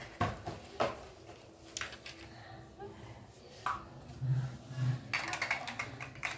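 Hard plastic toy bulldozer being handled: scattered clicks and taps of its plastic parts, with a quicker run of clicks near the end.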